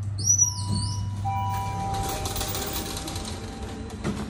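Old lift car arriving and opening its doors: a brief high squeal about a quarter second in, then two steady ringing tones held for about three seconds over a low hum.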